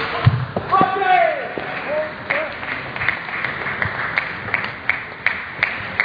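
Table tennis ball clicking in a rally, a steady series of sharp ticks about two to three a second from about two seconds in, in a large hall. Before the clicks a voice calls out briefly.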